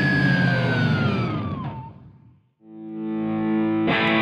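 Overdriven electric guitar. A held note slides down in pitch and dies away about halfway through. A sustained chord then swells in, and a fresh strum hits near the end.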